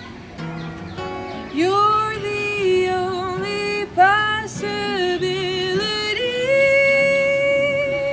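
A woman singing a wordless melody over strummed acoustic guitar; the guitar comes in first, the voice enters about a second and a half in and ends on a long held note.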